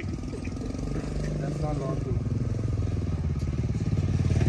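Small motorcycle engine running, a fast even pulse that grows steadily louder.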